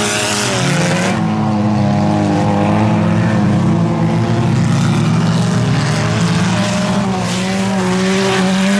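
Several four-cylinder bazou race cars running at high revs at once, their overlapping engine notes each rising and falling in pitch as the drivers accelerate and lift through the turns.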